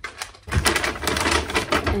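A brown paper gift bag rustling and crackling as a hand rummages inside it and draws out a small bottle. It is a quick, dense run of crackles that starts about half a second in.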